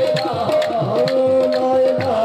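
Qawwali music: tabla strokes, the low ones gliding down in pitch, under a melodic line that holds one note for over a second in the second half.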